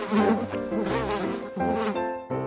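Housefly buzzing in flight, its pitch wavering up and down; the buzz stops as it lands at the end.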